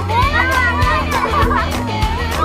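Excited children's voices, high chatter and calls overlapping, over music with a steady bass line and a beat about twice a second.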